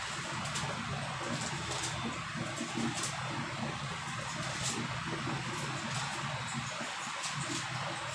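Thin Bible pages being leafed through, giving brief soft rustles and ticks, over a steady room hum.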